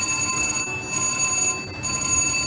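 A VGT Mr. Money Bags slot machine's jackpot alarm ringing steadily and high-pitched: the signal of a $2,500 hand-pay jackpot waiting for an attendant to validate it.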